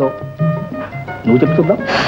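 Old film soundtrack: steady background music with a man's voice briefly over it, and a short, loud, hissing burst of sound near the end.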